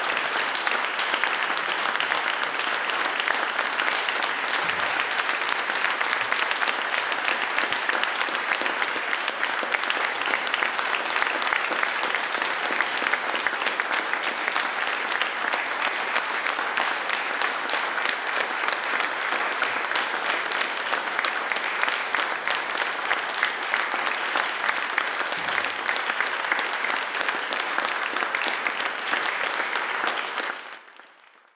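Audience applauding: a steady, even clatter of many hands clapping.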